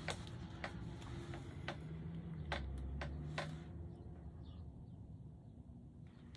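Faint, scattered crackles and clicks of the clear plastic film on a diamond-painting canvas as it is handled, with a low rumble of handling noise between about two and three and a half seconds in.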